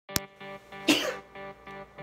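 A person sneezing once, a short sharp burst about a second in, over soft background music. A brief click right at the start.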